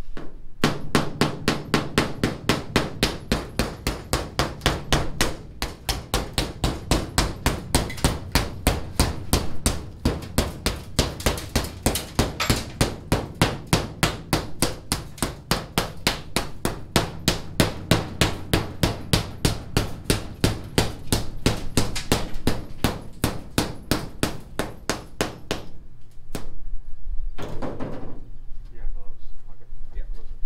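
Rapid, steady hammer blows, about three or four a second, knocking out the taped-up windshield glass of a 1962 Willys Wagon. The blows pause briefly twice and stop shortly before the end.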